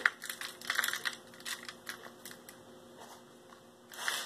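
Shredded nut crumbs sprinkled by hand onto stuffed mushrooms on a foil-lined baking sheet, making faint, irregular ticks and crackles as the bits land on the foil and filling. The clicks come thickly for about two seconds, then thin out.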